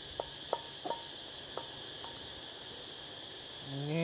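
Crickets chirring steadily. Over them come about five light clinks in the first two seconds as a pan and a wooden spatula knock against a ceramic plate while stir-fry is served.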